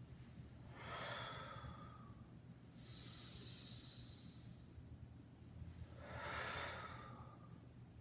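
A person breathing deeply in time with a slow yoga leg lift on hands and knees: three long breaths of about a second and a half each, the middle one higher-pitched and hissier, over a low steady hum.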